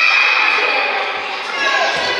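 A sports whistle sounded in one long, steady blast that stops about one and a half seconds in, over the chatter and shouts of children in a school gym.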